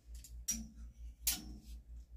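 Two sharp clicks of clothes hangers knocking on a metal clothing rack as garments are hung up and taken down, over a low hum that pulses about five times a second.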